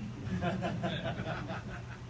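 Light chuckling laughter.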